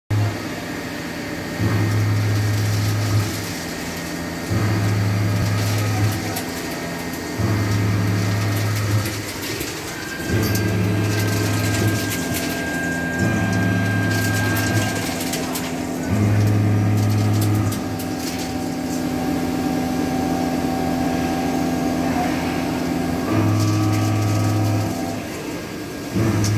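Round-insert milling cutter rough-milling a steel block on a 5-axis CNC machine, with a steady hiss under it. A low hum comes in for about a second and a half roughly every three seconds as the cutter takes each pass and cuts out as it leaves the work, with a longer gap before the last pass near the end.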